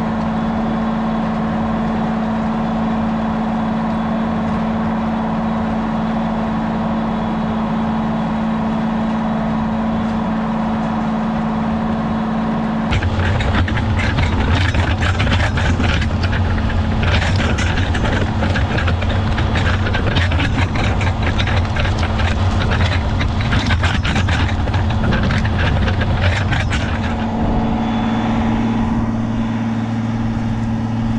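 John Deere 7810 tractor's diesel engine running steadily under load, pulling a five-bottom moldboard plow through the field. About halfway through the sound jumps to a louder, deeper rumble with dense crackling and rattling of the plow frame and turning soil. Near the end it drops back to the steady engine drone.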